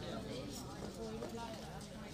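Several people talking indistinctly, with a few hoof clops from a horse shifting its feet on paved ground.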